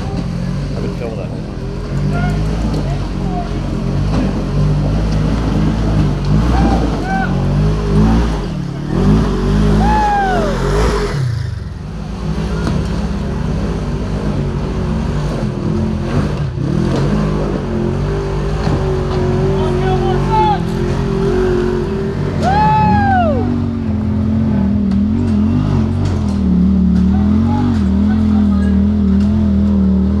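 Polaris RZR side-by-side engines running hard and revving up and down on a steep dirt and rock climb, the throttle rising and falling with the machine's progress.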